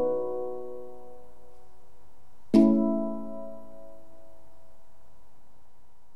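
Steel handpan, a note from just before ringing and fading, then struck once more about two and a half seconds in. The chord of notes is left to ring out and slowly die away as the hands lift off the instrument.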